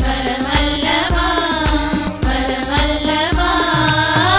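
Devotional song: a voice singing a flowing melody over percussion with a steady beat of about two strokes a second.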